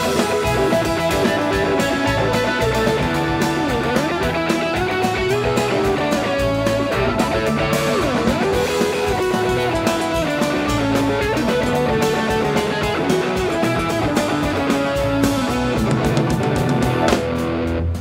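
Live jam-rock band playing: an electric guitar lead with bending notes over bass, drums and keyboards. A heavy final hit lands near the end and the band drops away.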